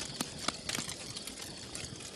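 Wood campfire crackling, with several sharp pops in the first second.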